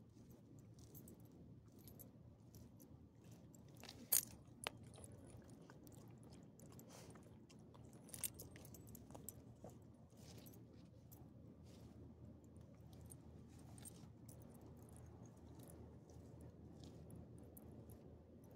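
Faint crunching, scuffling and clicking close to the microphone from a dog rolling and mouthing on the pavement, with its collar and leash hardware clinking. A couple of sharper clicks come about four seconds in, and another near eight seconds.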